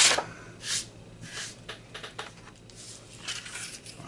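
Paper scratch-off lottery tickets being handled. There are a few brief rustles and light taps, the loudest right at the start, as one ticket is slid away and the next is laid down on a concrete surface.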